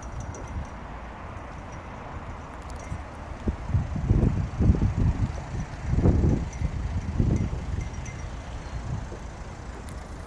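Low rumble of wind buffeting and handling noise on a handheld microphone, swelling in several gusts between about four and eight seconds in.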